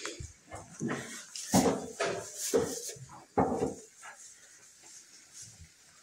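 Goats moving about in the hay bedding of a barn pen: a run of short, irregular animal noises and rustles, loudest in the middle, dying down near the end.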